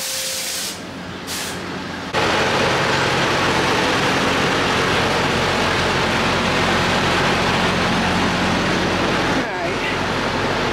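Strong storm wind hitting the microphone: a loud, steady rush that starts suddenly about two seconds in and eases just before the end, with a steady low hum underneath.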